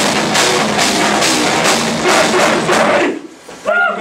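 A live metalcore band plays with a drum kit and distorted guitars, then stops abruptly about three seconds in. A voice calls out just before the end.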